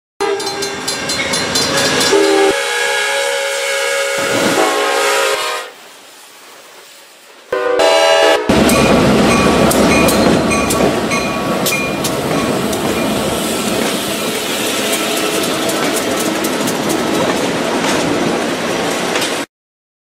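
Diesel locomotive air horn sounding a long chord, then a short lull and another brief horn blast. After that a train rolls past close by with its wheels clattering over the rail joints. The sound cuts off abruptly near the end.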